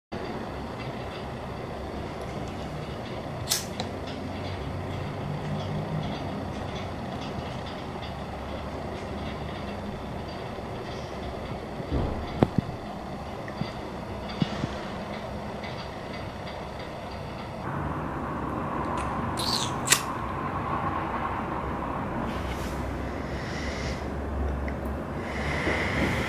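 Steady low rumble of vehicle noise, broken by a few sharp clicks and knocks.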